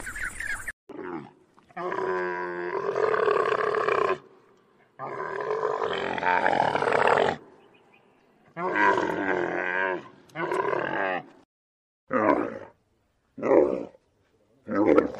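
An animal calling in a series of loud, pitched calls: two long drawn-out calls, then shorter and shorter ones with pauses between.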